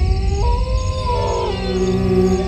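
Horror-trailer score: a deep rumbling drone with a high, howl-like tone above it that climbs in pitch about half a second in. Around a second and a half in, it settles into several held notes.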